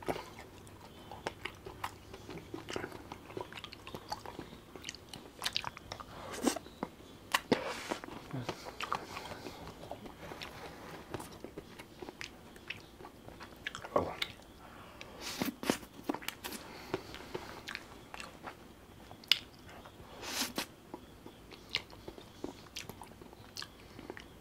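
Close-miked biting and chewing of an Amul pistachio kulfi ice-cream bar: irregular short clicks and mouth sounds with quiet gaps between them.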